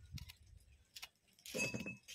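A small knife scraping and clicking against a small fish as it is cleaned by hand, with light metallic clinks: a few faint ticks in the first second, then a louder, brief scratchy burst near the end.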